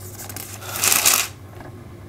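Thin Bible pages being turned by hand: a papery rustle lasting about a second, loudest just before the one-second mark.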